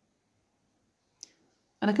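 Near silence broken by a single short click a little past halfway through.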